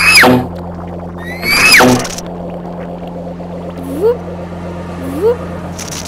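Homemade voice sound effects over a steady low hum. Two high whistle-like notes each rise briefly and then swoop steeply down, one at the start and one about a second and a half later. Near the end come two short rising 'whoop' calls.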